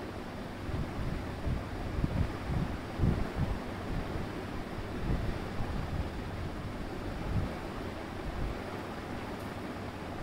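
Steady background noise: an even hiss with an uneven low rumble underneath, with no clear events in it.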